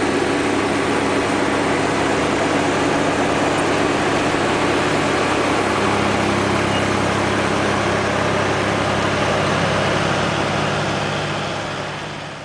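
Tractor engine running at a steady speed with a mounted pneumatic precision seeder, a constant hum under an even hiss. The sound fades out near the end.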